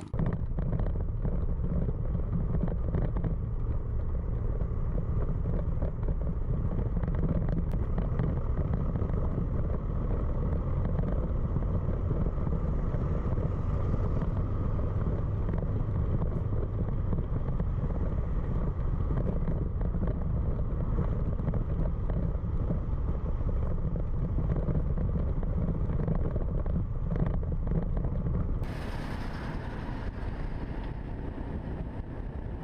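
Steady wind rumble and engine noise picked up by a camera on a moving motorcycle, heaviest in the low end. Near the end the sound drops a little and turns thinner.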